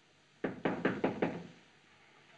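Five quick knocks on a door, about five a second, starting about half a second in.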